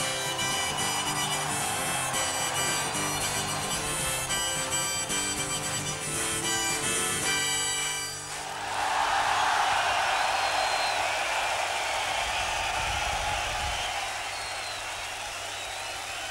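Harmonica played over guitar in the closing bars of a rock song. The music stops about halfway through, and a stadium crowd cheers and applauds, loudest just after the music ends.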